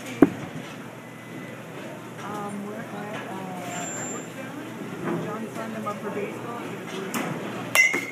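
Batting-cage sounds: a sharp knock of a pitched baseball just after the start, faint voices murmuring through the middle, then near the end the crack of a bat hitting a pitched ball.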